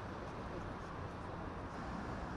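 Steady street ambience with a low traffic rumble.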